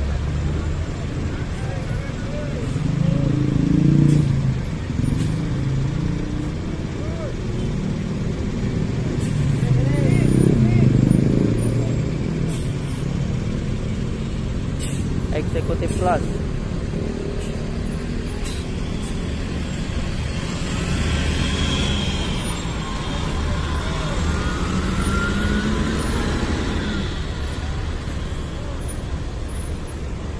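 Busy road traffic with intercity coaches running close by as they pull past, under a steady low rumble that swells louder twice in the first half. A short sharp sound comes about halfway through, and rising pitched sounds follow later, with voices in the background.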